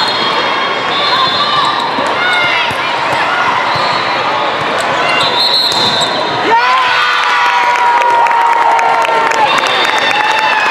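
Indoor volleyball rally: sneakers squeaking on the court, the ball being struck, and players and spectators calling out. About six and a half seconds in, a voice rises into one long call held for about three seconds.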